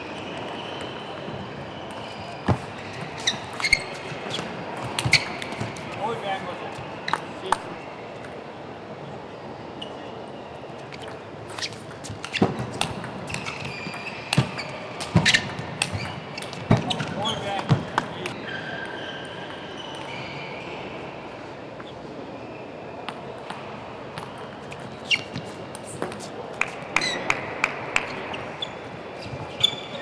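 Table tennis rallies: the celluloid ball clicks off the rackets and the table in quick runs of hits, in three bursts of play.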